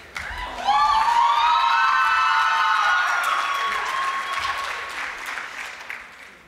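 Banquet audience applauding, joined by long held cheers from several voices. It swells about half a second in and fades toward the end.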